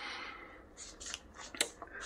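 Faint rustling and light handling clicks, with one sharper click about one and a half seconds in.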